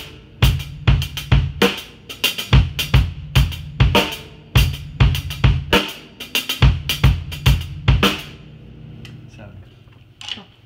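Drum kit playing a fusion groove in 7/8: double-stroke diddles on the hi-hat over bass drum and snare. The playing stops about eight seconds in, and the kit rings out briefly.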